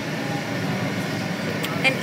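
Steady low rumble of a moving vehicle heard from inside the cabin, with a short click and a voice starting near the end.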